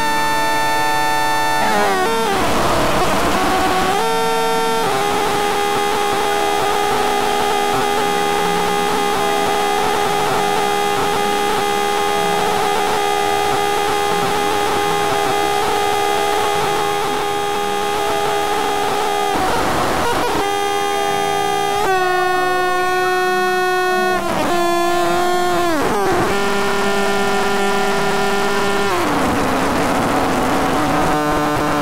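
Experimental synthesizer drones, a microKorg XL played by Max/MSP: several held pitched tones layered over hiss and noise, loud and steady. The texture changes abruptly a few times, with tones gliding downward in pitch at each change.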